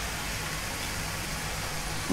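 Chapli kababs shallow-frying in oil in a nonstick pan: a steady sizzle.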